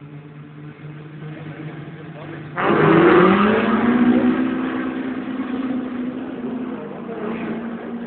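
Rallycross cars idling on the start grid, then about two and a half seconds in they launch together: a sudden loud burst of engines revving hard, climbing in pitch and slowly fading as the pack pulls away.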